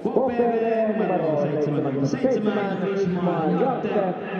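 A man's voice speaking continuously; nothing else stands out.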